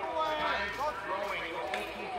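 Faint, indistinct people's voices talking or calling out, over a low steady rumble.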